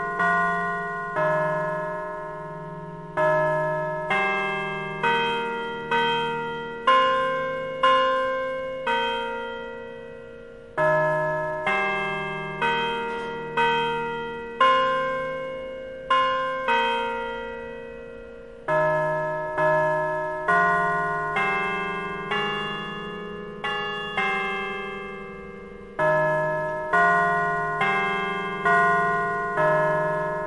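Bells ringing a slow tune, about one strike a second, each note ringing on and fading, in phrases separated by short pauses.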